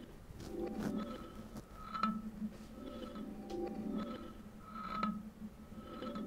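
Reverse-reverbed kalimba sample paired with a grainy texture that is almost like sand being dropped onto the kalimba. Soft notes swell and fade about once a second over faint scattered clicks.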